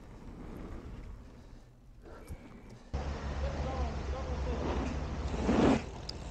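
Mountain bike tyres rolling over the dirt pump track with a steady outdoor rumble of wind. The sound steps up abruptly about halfway through, then swells to a peak as the bike passes close to the microphone near the end.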